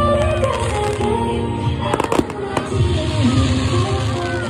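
Fireworks going off, with a quick cluster of sharp bangs and crackles about two seconds in, over music that plays throughout.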